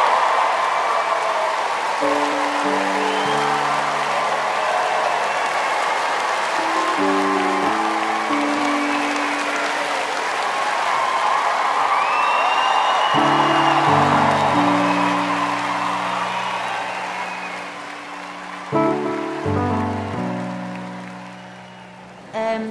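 Audience applauding and cheering over slow, sustained instrumental chords; the applause dies away over the last several seconds, leaving the chords.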